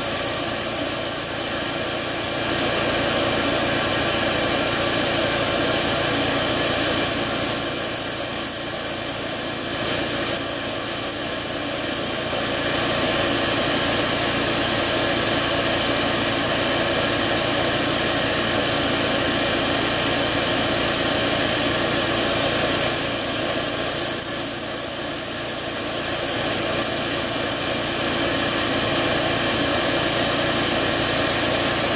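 High-speed rotary carving drill running with a steady whine as it cuts goose eggshell. It dips briefly twice, about eight seconds in and again around twenty-four seconds in, with short high swoops in pitch.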